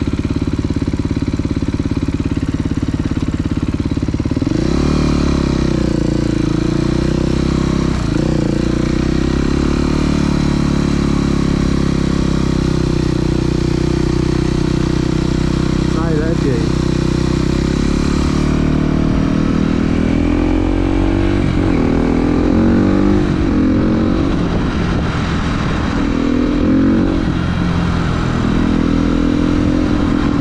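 Dirt bike engine heard from on board: it idles, then revs up and pulls away about four and a half seconds in, and keeps rising and falling in pitch through throttle and gear changes while riding.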